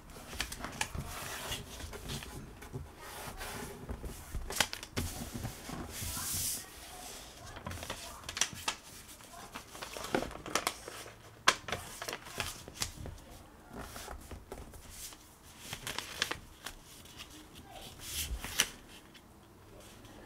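A sheet of printed paper being folded and creased by hand: irregular rustling and crinkling, with many sharp taps and clicks as fingers press the folds against the tabletop.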